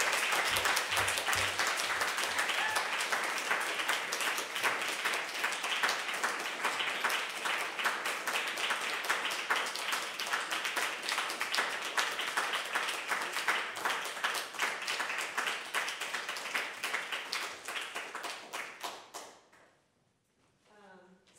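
Audience applauding, a dense run of hand claps that thins out and dies away near the end.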